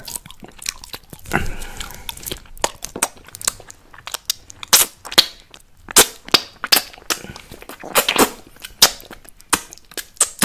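Close-miked wet mouth sounds of a lollipop being sucked and licked: irregular sharp lip smacks and tongue clicks, with a longer slurp about a second and a half in.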